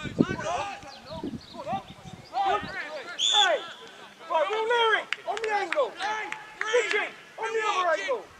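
Several voices shouting across an open football pitch: short calls from players and coaches, one after another, the words not clear, with one brief shrill call about three seconds in.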